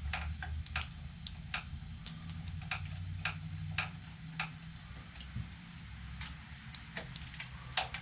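Sparse, irregular metallic clicks and taps of hands and tools working on a Harley-Davidson motorcycle, over a low steady hum.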